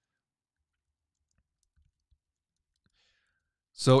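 Near silence: the microphone is gated, and any typing or mouse clicks are barely there. A man's voice starts just before the end.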